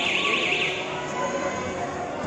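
Electronic game-clock alarm warbling rapidly up and down, cutting off less than a second in, with voices on the court underneath.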